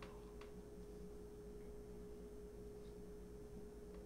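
Near silence: quiet room tone with a faint, steady single-pitch hum.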